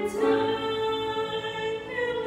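Choir singing a hymn in long held notes, moving to a new chord about a quarter of a second in.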